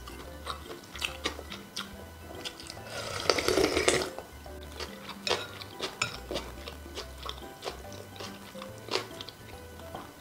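Soft background music with close-miked eating sounds: a wooden spoon and wooden chopsticks clicking against a glass bowl of noodles in broth. About three seconds in, a louder slurp of broth lasts about a second.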